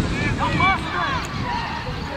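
Several short, high shouts from players and onlookers on the pitch, over steady wind rumble on the microphone.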